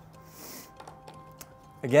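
A screwdriver snugging a GFCI receptacle's mounting screw down into a plastic electrical box: a brief faint rasp, then a few light clicks.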